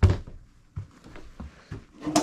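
Footsteps on carpeted stairs: a few soft, muffled thuds spaced roughly half a second apart, after a sharper knock right at the start.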